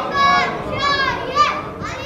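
Congregation reciting salawat aloud together in answer to the preacher's call, with high children's voices standing out. It comes in several short chanted phrases whose pitch swoops.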